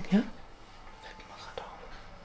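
A woman's voice says a short questioning "ja?", then quiet room tone.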